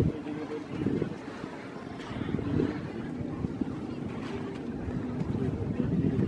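Wind rumbling on the microphone over open water, with faint voices now and then.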